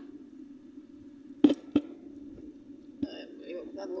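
Two sharp clicks about a third of a second apart, about a second and a half in, then a fainter click near three seconds, over a steady low hum. Faint voices come in near the end.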